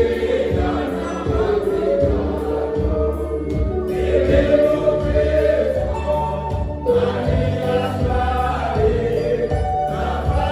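A small church choir of men and women singing a hymn together from hymnbooks, the men's voices carried through handheld microphones. The singing is steady and continuous, with long held notes.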